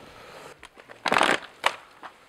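Boots crunching in dry sand and brush on a steep slope: one loud crunch about a second in, then a short sharp click.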